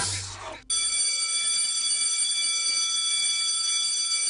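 The hip hop beat dies away, and just under a second in a steady bell-like ringing tone with several high overtones sets in and holds at an even level without decaying.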